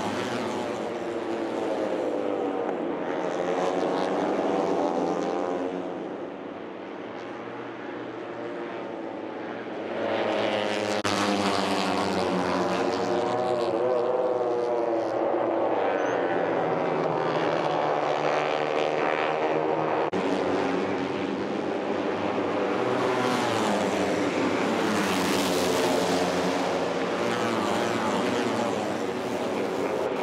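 A pack of Moto3 racing motorcycles with 250 cc single-cylinder four-stroke engines, running at high revs as they pass. Several engines overlap, their pitch rising and falling. The sound drops quieter for a few seconds about six seconds in, then comes back loud.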